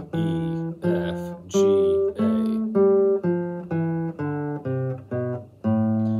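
Single notes plucked one at a time on a nylon-string classical guitar, playing the A minor scale, about two notes a second. The notes climb for about two seconds and then step back down, ending on a low note that rings on.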